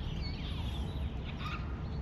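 Birds chirping a few times over a steady low outdoor rumble.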